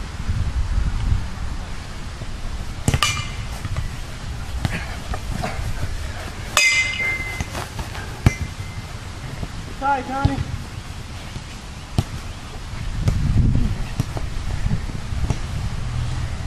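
Sharp clacks of sticks hitting a ball and each other in a scramble on grass, a handful of scattered hits, one ringing briefly about six and a half seconds in. A short shout about ten seconds in, over a low rumble of movement on the microphone.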